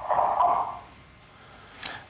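Burst of garbled, narrow-band noise on a bad telephone line, lasting under a second, then only faint line hiss: a phoned-in caller's connection breaking up as the call drops.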